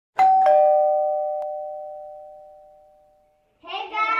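Two-note ding-dong doorbell chime: a higher note, then a lower one, ringing out and fading over about three seconds. Children's voices start just before the end.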